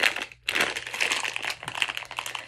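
Clear plastic bag crinkling as it is handled in the hands: a dense run of crackles with a short break about half a second in.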